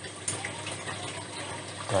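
Steady sound of running water from a PVC-pipe hydroponic system's circulating nutrient solution.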